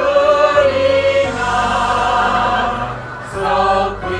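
A group of voices singing together in held notes, a stage-musical chorus, with a short dip in loudness near the end.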